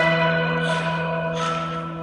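Live band music: a held chord with bell-like tones over a steady low note, with two short cymbal-like washes in the middle.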